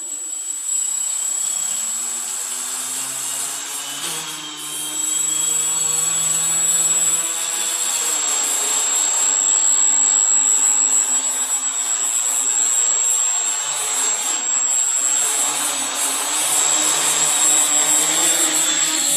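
Small home-built quadcopter's four electric motors and propellers spinning, a steady whirring with a thin high whine. It grows louder about four seconds in and again around nine seconds as the throttle is raised, and once more near the end as it lifts off the floor.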